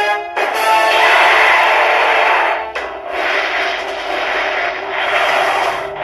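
A CR Pachinko Ultraman M78TF7 pachinko machine playing its music and effects through its speakers. It comes as two loud, noisy stretches of about two and a half seconds each, with a short dip between them near the middle.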